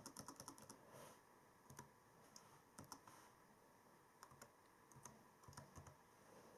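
Faint laptop keyboard keystrokes as a search word is typed: scattered key taps, bunched in the first second, again around the middle and near the end.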